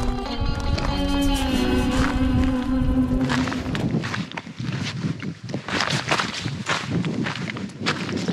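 Background music with held notes for the first three seconds or so, then fading out. After it, footsteps crunch on a stony dirt track, about two steps a second, at a walking pace.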